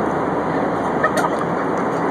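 Steady airliner cabin noise: the engines and rushing airflow heard from inside the passenger cabin in flight. A couple of small clicks come just after a second in.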